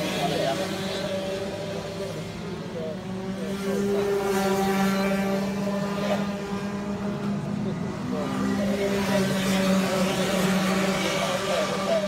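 Two-stroke kart engines running nearby: a steady droning hum that swells louder about four seconds in and again near the end.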